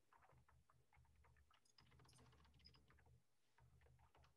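Near silence: faint scattered clicks over a low on-and-off hum.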